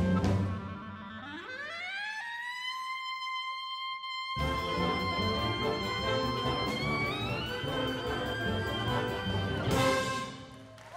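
Solo clarinet sliding up in a long glissando to a high held note, played alone. About four seconds in, the wind band comes in under the sustained note, and the piece closes on a loud final band chord near the end.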